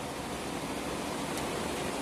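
Steady background hiss and hum of room noise, even throughout, with no distinct events.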